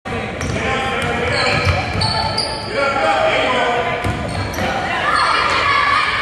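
A basketball being dribbled on a hardwood gym floor, under the overlapping voices and calls of players and spectators in a large gym hall.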